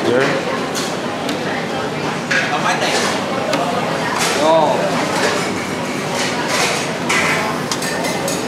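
Busy noodle-stall ambience: background chatter with scattered clinks of steel bowls, ladles and utensils against metal pots.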